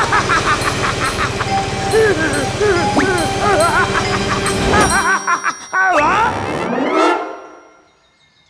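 Cartoon character laughing in wordless bursts, over a low rumble that stops about five seconds in; more vocal whoops follow, then the sound fades away near the end.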